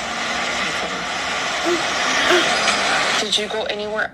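Steady, loud hiss of background noise, like static in a played audio recording, with a voice starting to speak near the end.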